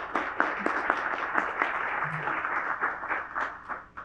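Audience applauding, many hands clapping at once and dying away to a few last claps near the end.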